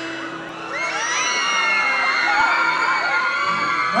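Concert audience screaming and cheering, with many overlapping high shrieks and whoops that swell about a second in, over a low chord held by the band.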